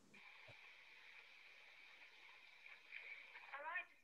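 Near silence: a faint steady hiss on an open call line, with a brief faint voice just before the end.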